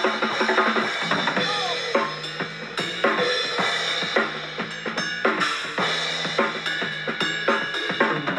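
A band jamming: a drum kit keeping a steady beat with kick and snare, over bass guitar notes.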